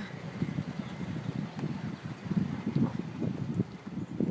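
Wind buffeting a handheld microphone in irregular gusts, over a low rumble of slow, queued car traffic.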